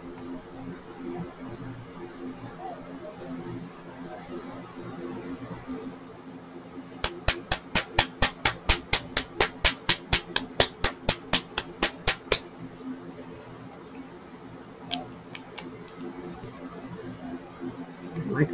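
A small glass nail polish bottle holding clear basecoat/topcoat and mica powder is shaken hard to mix it. It rattles in a fast, even run of sharp clicks, about five or six a second, starting about seven seconds in and lasting some five seconds. A low steady hum runs underneath.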